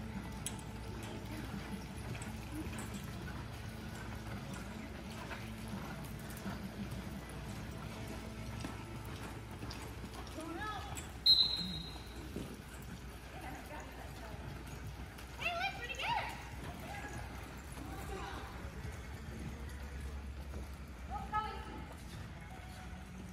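Hoofbeats of several horses loping on the soft dirt floor of an indoor arena, with distant voices calling out now and then. A brief sharp high-pitched sound about halfway through is the loudest moment.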